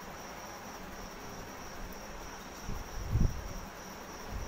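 A steady high-pitched tone over faint hiss, with a brief low thump a little after three seconds in.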